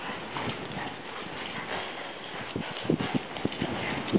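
Hoofbeats of a grey PRE stallion trotting on dirt arena footing, a run of soft thuds that grows more distinct in the second half.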